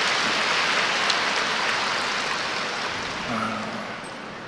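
Large audience applauding in a hall, steady clapping that dies away near the end.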